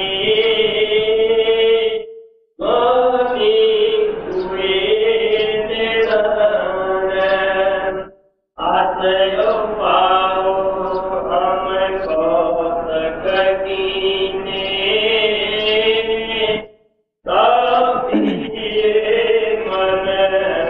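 A voice chanting a devotional verse to a slow melody with long held notes, in three or four phrases separated by brief pauses.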